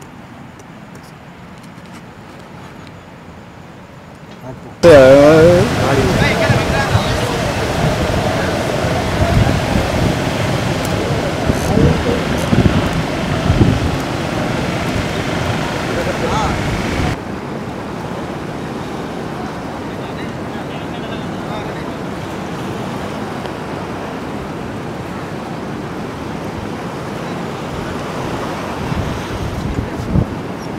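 Fairly quiet at first, then about five seconds in a sudden loud stretch of raised, wavering voices lasting about twelve seconds, followed by steady sea surf and wind buffeting the microphone.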